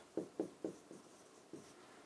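Marker pen writing on a whiteboard: a few short, faint scratching strokes, mostly in the first second.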